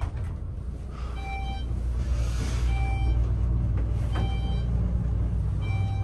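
Schindler elevator car travelling upward, with a steady low hum and rumble from the ride. A short electronic beep sounds each time a floor is passed, four times about a second and a half apart.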